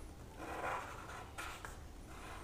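Cello Whitemate whiteboard marker drawn across paper while inking a shape's outline, faint. One longer stroke comes about half a second in and a short one past the middle.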